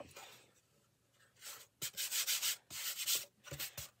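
Wooden sign frame being shifted and slid across a tabletop: several short scraping rubs with a couple of light knocks, starting a little over a second in.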